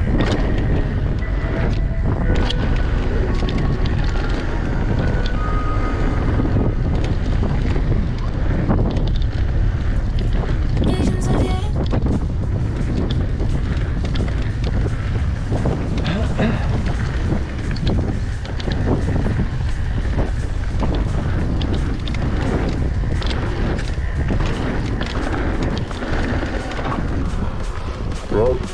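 Mountain bike riding down a dirt forest trail: a steady low wind rumble on the microphone, with tyres running over dirt and the bike rattling and knocking over bumps.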